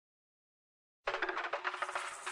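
Silence for about a second, then a quiet, rapid run of plucked strokes on a saz (bağlama), repeating around one steady note.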